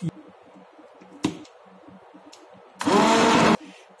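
A single knock about a second in, then a hand-held immersion blender running in a pot of fish stock for under a second, starting and stopping abruptly near the end. It is puréeing the fish and onion stock to thicken the stew.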